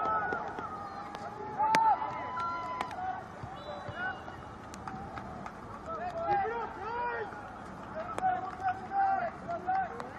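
Scattered shouts and calls from soccer players and spectators, overlapping. A few sharp knocks cut through, the loudest just under two seconds in.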